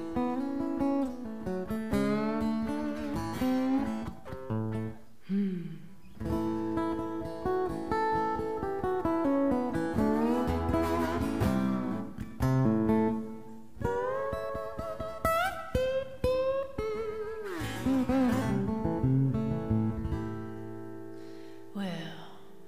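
Solo acoustic guitar playing a song's intro, a mix of picked notes and strums, with her voice coming in on one sung word at the very end.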